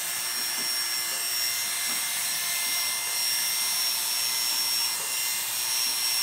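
Oster Classic 76 hair clipper with a 3 3/4 (13 mm) blade running with a steady high whine as it cuts hair, pushed up against the grain.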